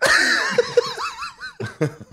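A man laughing heartily: a sudden, high laugh that wavers in quick pulses, breaking into shorter bursts of laughter near the end.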